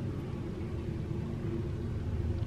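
Steady low background rumble with a faint hum, unchanging throughout.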